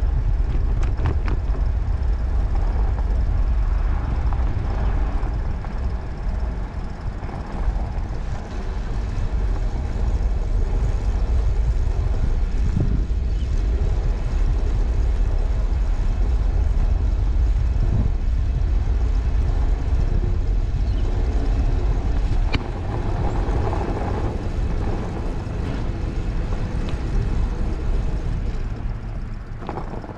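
Wind buffeting a handlebar camera's microphone as a bicycle rolls over a fresh-snow-covered path, with a steady rush of tyre and riding noise. The noise eases near the end as the bike slows.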